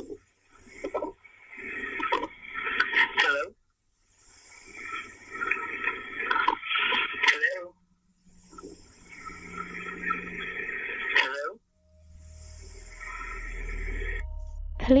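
Indistinct, muffled noise and voice over a 911 emergency phone call, no clear words, coming in three stretches of a few seconds each with short silent gaps between. Near the end a low drone fades in and grows.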